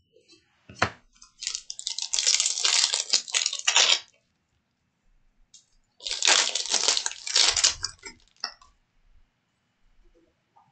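Foil trading card pack wrapper crinkling and being torn open by hand, in two long crackly stretches, after one short sharp click.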